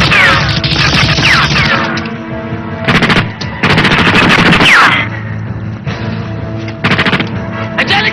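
Rapid bursts of automatic gunfire from a film soundtrack. There are long bursts in the first two seconds and from about three and a half to five seconds, shorter ones around three and seven seconds, and another at the very end. Falling whistles ride on the longer bursts, and background music with sustained tones plays underneath.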